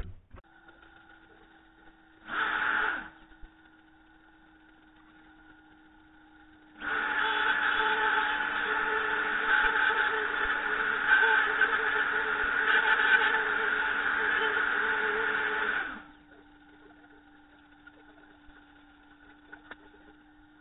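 Plunge router running on a dovetail jig with a steady whine, making a short cut about two seconds in and a longer steady cut of about nine seconds starting about seven seconds in.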